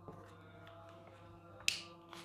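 A single sharp click near the end, over a faint steady hum.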